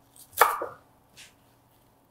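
Chef's knife chopping fresh spinach on a wooden cutting board: one firm stroke about half a second in, and a lighter one just after a second.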